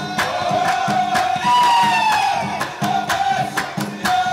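Moroccan Rokba folk troupe: a line of men singing in unison over steady handclaps, about two a second. In the middle the claps thin out under one long, loud call that slowly falls in pitch, then the clapping picks up again.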